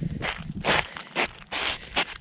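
Footsteps crunching and scraping on an icy road, about two steps a second.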